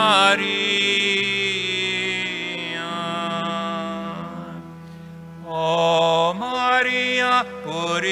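An Italian Marian communion hymn being sung in a church, with long held notes and a brief quieter stretch a little past halfway.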